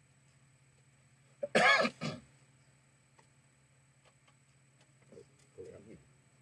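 A person clears their throat once, loudly, about one and a half seconds in, over a low steady hum; a few faint clicks follow.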